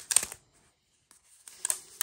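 Rubber bands being worked off a small package wrapped in brown kraft paper, giving short crisp clicks and rustles of band and paper. There is one brief cluster at the start and another about one and a half seconds in.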